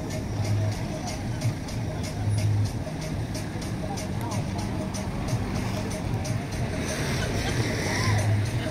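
Music with a steady beat and a repeating bass line, with people's voices over it.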